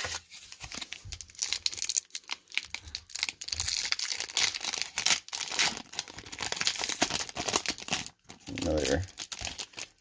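Foil wrapper of a 1994 Topps Series 2 baseball card pack crinkling and tearing as it is ripped open by hand, a dense run of crackles.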